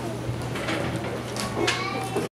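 Low voices and rustle from an audience over a steady low hum, with a short high-pitched sound that rises slightly in pitch near the end.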